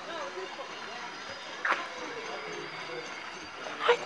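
Background chatter of people talking, with a sharp click about a second and a half in and a louder one just before the end.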